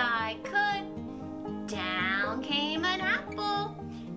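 A woman singing a children's nursery rhyme over light instrumental backing music.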